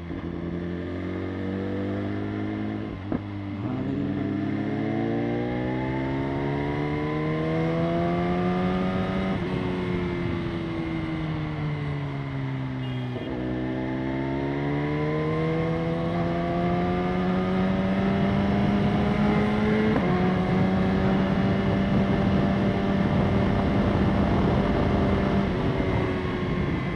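BMW S1000RR inline-four sportbike engine under way: its pitch climbs under throttle from about four seconds in, falls back as the rider rolls off, climbs again, then holds steady at a cruising pace near the end.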